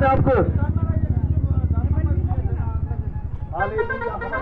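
A motorcycle engine running close by, a low, rapid pulsing that fades out about three seconds in, with faint voices beneath it.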